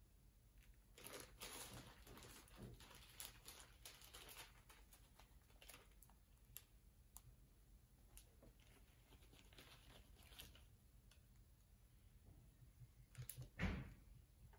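Faint pattering and rustling of compost-and-akadama bonsai soil being poured from a crinkling plastic bag onto the pot's surface, with scattered small ticks of grains landing. A brief, louder rustle comes near the end.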